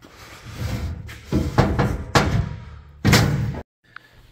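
Several heavy thumps and knocks, a little over a second apart, then a louder, longer bang near the end that cuts off abruptly.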